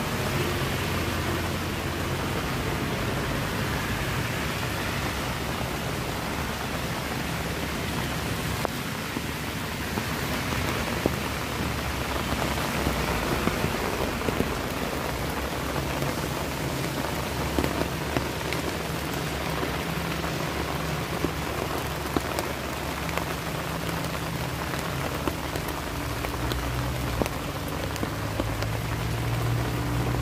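Heavy rain falling steadily, with scattered sharp ticks of drops striking a nearby surface.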